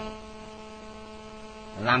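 Steady electrical mains hum in a microphone and sound system, several steady tones held at one level through a pause in the talk.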